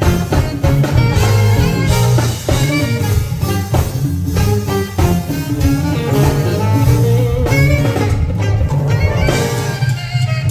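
Live jazz band playing: saxophone over an electric bass line and drum kit, with a steady beat.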